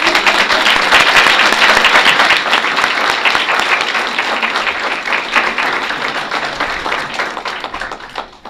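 Audience applause, a dense patter of many hands clapping that starts suddenly at full strength and slowly dies down.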